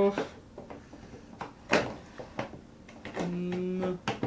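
Plastic bottom cover of a 2011 Mac Mini being set onto the case and twisted into place: a few light clicks and knocks, the sharpest almost two seconds in. A short hummed voice sound comes near the end.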